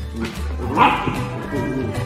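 Background music with a steady bass line, and a golden retriever puppy giving one short bark a little under a second in.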